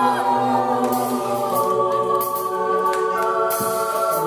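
Live rock band's intro: sustained choir-like chords held steadily, with a few gliding notes at the start and a chord change about a second in and again near the end.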